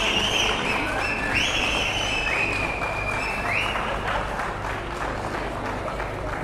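Audience applauding in a dense clatter of clapping. Over the first four seconds a series of high-pitched squeals sounds four or five times, each about a second long with a quick rising start.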